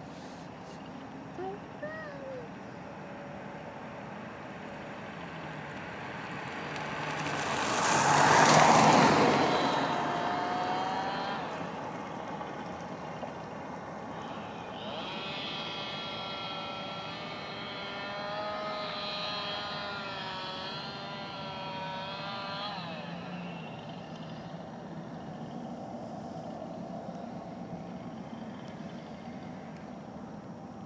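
A road vehicle passes by, swelling to a peak about eight seconds in and then fading. Later a long wavering tone with several overtones lasts for several seconds over a steady background hum.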